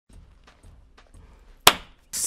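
A single sharp hand clap about a second and a half in, with faint low background noise and small ticks before it.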